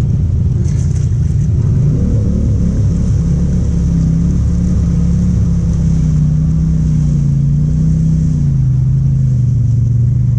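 ATV engine running steadily at moderate revs while riding through mud, its pitch drifting gently up and down and easing lower near the end.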